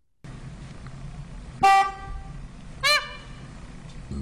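Male Indian peafowl (peacock) giving two loud, nasal, horn-like calls, the second about a second after the first and rising and falling in pitch.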